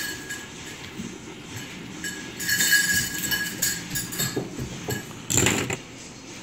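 Metal fidget spinners clicking and clinking against each other as they are stacked into a tower on a wooden desk. The clatter is busiest between about two and three and a half seconds in, and there is one sharp knock near the end.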